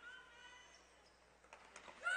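Near silence: faint court ambience of a basketball game in play, with a faint squeak near the start and a few soft knocks in the second half.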